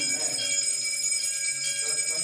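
Brass puja hand bell (ghanta) rung continuously, a steady high ringing.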